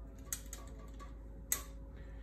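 Paintbrush working paint in the pans of a small metal watercolour tin, its ferrule or handle clicking against the tin: two sharp clicks about a second apart, with faint ticks between them.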